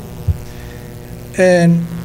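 Steady electrical mains hum through a microphone sound system while the man at the podium pauses, with a brief low thump about a quarter second in. Near the end comes a man's drawn-out, flat-pitched hesitation sound lasting about half a second.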